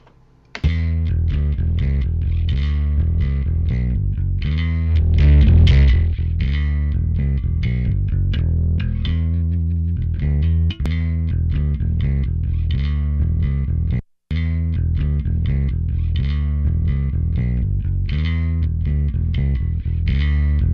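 Recorded electric bass guitar part played back: a blend of a clean DI track, a SansAmp-driven track and a distorted track, with no amp simulator on it. The bass notes sit heavy and low with a gritty top. The playback starts about half a second in and cuts out briefly about two-thirds of the way through before resuming.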